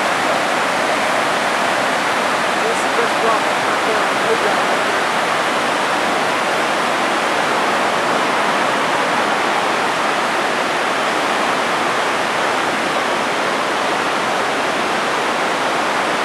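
Whitewater rapids rushing over boulders: a loud, steady rush of churning water.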